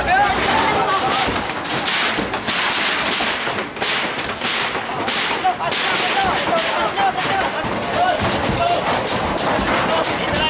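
Demolition of shanties: repeated, irregular banging and crashing of struck and torn roofing and timber, several impacts a second, with people's voices throughout.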